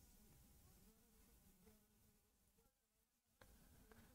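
Near silence: faint room tone with one faint click near the end.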